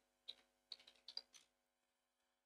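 Faint typing on a computer keyboard: about four soft, scattered keystrokes.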